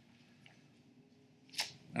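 A quiet pause in a man's speech with only faint room tone, then a short breath and the start of his next word near the end.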